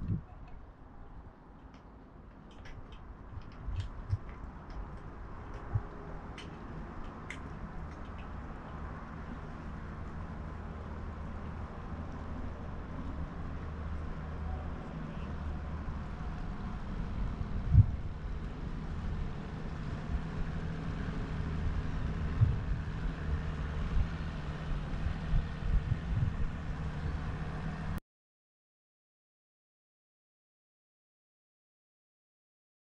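A passing motorboat's engine drones steadily and grows louder over the stretch, with a few light ticks in the first several seconds. The sound cuts off suddenly near the end.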